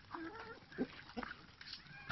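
Poultry calling in a feeding flock of hens and ducks: a short wavering call near the start, then two brief sharp clucks.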